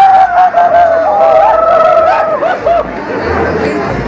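Crowd of people talking and calling out, with long, wavering shouts held for about a second at a time.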